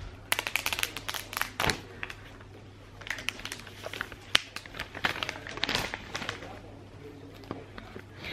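Clear plastic shrink-wrap being torn and peeled off a new phone box: an irregular run of crinkles and crackles.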